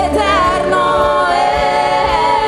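Live gospel worship song: several voices singing together into microphones, with sliding melodic lines over keyboard accompaniment.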